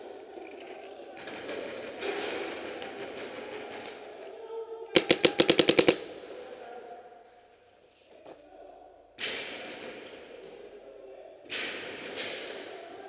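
Paintball marker firing one rapid burst of about a dozen shots in under a second, about five seconds in.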